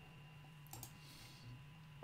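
Near silence: faint room tone with a steady low hum and a few soft clicks about three-quarters of a second in.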